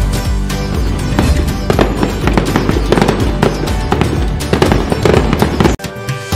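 Firework bangs and crackles over festive background music, crowding together from about a second in and breaking off suddenly just before the end.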